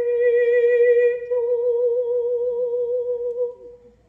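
A woman's voice through a handheld microphone holding one long note with a slight vibrato and no accompaniment, fading out near the end.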